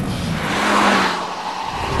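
A car on a race track: a rushing noise that swells and eases off, with a steady low hum through the middle.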